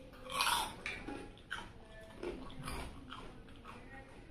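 Close-miked eating sounds: a person chewing and biting food, in a series of short bursts with the loudest about half a second in.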